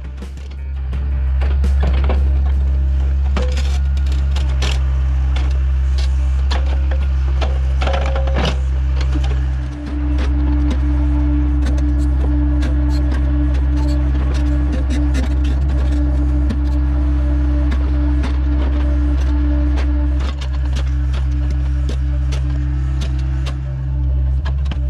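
Compact excavator's diesel engine running steadily under hydraulic load as its tiltrotator grapple picks up and sets a packing rock, with a steady whine through the middle and two brief dips in the engine. Scattered knocks and clicks of stone and steel.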